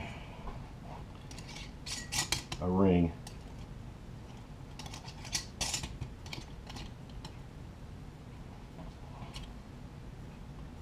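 Mason jar lid parts clicking and scraping as a fermentation lid and metal screw band are fitted onto a glass jar and hand-tightened. A brief hum of voice about three seconds in is the loudest sound.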